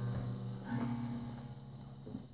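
Guitar strings ringing out and slowly fading, with a steady low hum underneath.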